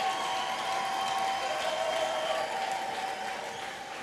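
A congregation clapping and applauding, with a few faint steady tones held beneath it that fade out about three seconds in.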